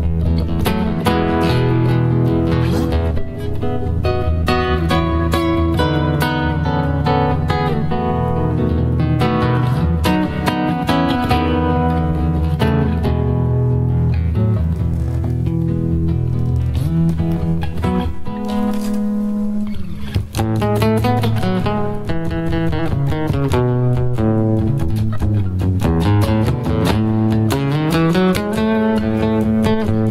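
Solo classical guitar, fingerpicked melody over held bass notes, with a momentary break about twenty seconds in.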